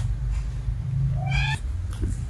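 A cat meows once, a short call rising slightly in pitch, about a second in, over a steady low rumble.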